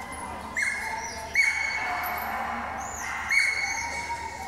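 A dog giving high-pitched whining cries, three of them, each a steady held note: one about half a second in, a longer one just over a second in, and another near the end.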